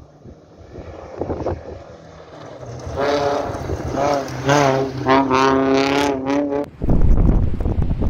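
A rally SUV's engine revving hard several times as it drives past, the pitch rising and falling with each rev. About seven seconds in it cuts off abruptly to loud wind buffeting the microphone.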